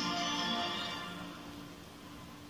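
Music from a television channel promo, played through the TV's speaker: several held notes that fade out over the second half.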